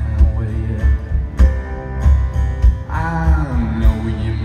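Live rock band playing between vocal lines: strummed acoustic guitar, electric guitar, bass and drums, with a drum hit about every second. Heard from the audience in the hall.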